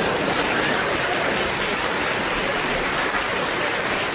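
Live audience applauding: a steady, even clapping.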